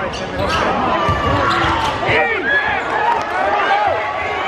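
Basketball game in a gym: many voices from the crowd and players calling out over the thuds of a basketball bouncing on the court.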